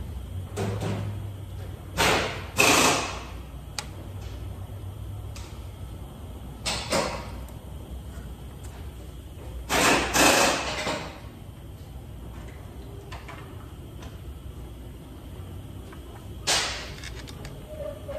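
Six short bursts of hissing, mostly in quick pairs, each under a second long, over a low steady background hum.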